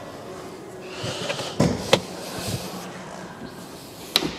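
Light handling and movement noise with two sharp clicks, about a second and a half and two seconds in.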